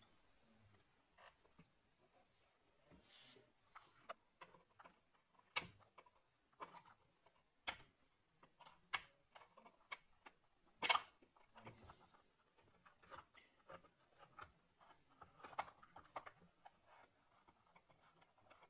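Faint, scattered small clicks and taps from fingers working the new battery's cable connector onto a MacBook's logic board, the loudest about eleven seconds in.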